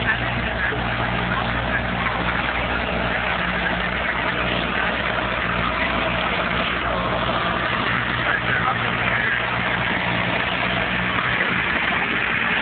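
A boat engine running steadily, a low even hum that holds throughout.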